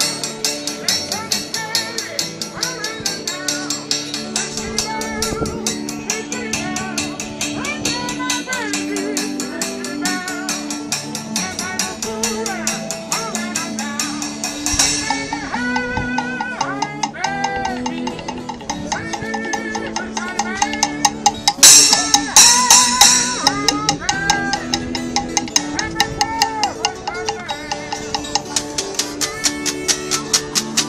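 Street washboard band playing: a washboard rubbed and tapped with gloved fingers keeps a steady quick beat under a changing melody line. A little past two-thirds of the way through come several loud, bright crashes, which fit the cymbal mounted on the washboard.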